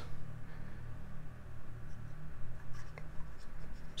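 Faint rubbing and light scraping as fingers shift two 2.5-inch laptop drives held together, metal casing against metal casing, over a low steady hum.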